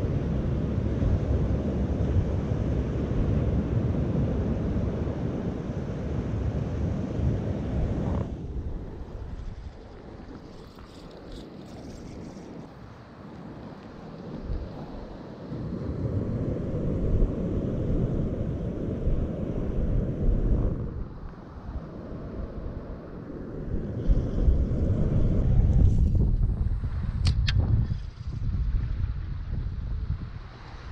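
Wind buffeting the microphone: a loud, low noise that fades for several seconds about a third of the way in and comes back, with a couple of faint clicks near the end.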